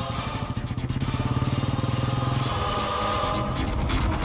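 Motorcycle engine running with an even, rapid low pulse as the bike pulls away; it fades out about two and a half seconds in.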